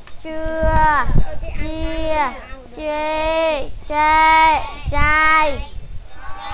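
Young children chanting Khmer syllables in a sing-song classroom recitation: five drawn-out syllables, each held and then falling in pitch at its end. A low rumble comes in under the voices about a second in and again near the end.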